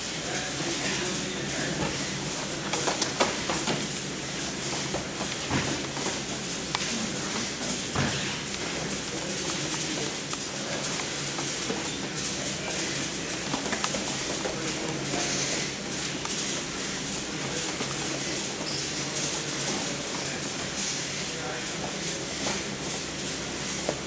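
Wrestlers drilling on mats in a large room: bodies and shoes shuffling and knocking on the mat, with a few sharp thuds and indistinct voices over a steady low hum.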